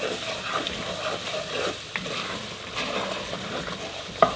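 Chopped bell pepper, celery and onion sizzling in hot roux in an enameled cast-iron Dutch oven, with a spatula scraping through the mixture in repeated stirring strokes.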